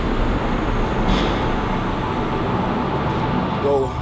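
Steady low rumbling noise without a clear pitch, with a man beginning to speak near the end.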